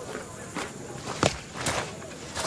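Footsteps: three steps about half a second apart, each a short sharp scuff.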